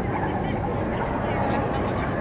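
A dog yipping and whining over a steady background of crowd chatter.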